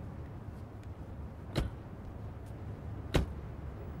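Two car doors slam shut about a second and a half apart, the second louder, over a low steady rumble.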